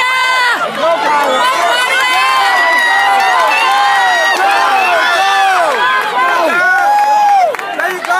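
Crowd of spectators yelling and cheering on sprinters during a relay race, many high voices shouting over one another.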